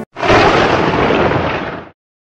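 A loud explosion-like burst of noise lasting just under two seconds, starting abruptly and cutting off sharply, with no pitch or rhythm in it.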